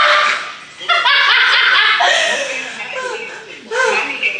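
Laughter mixed with high-pitched, excited vocalizing.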